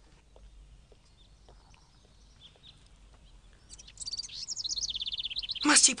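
Birdsong ambience: faint scattered chirps, then a fast trill of repeated high notes that falls in pitch over the last two seconds.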